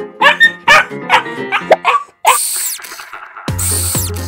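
A small dog barking and yipping several times in quick succession over background music, followed by a brief high hissing burst. Near the end, bouncy music with a steady bass comes in.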